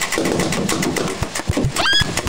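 Motorized Nerf blaster firing foam darts, its motor whirring with rapid clicking. Near the end a woman gives a sharp rising squeal.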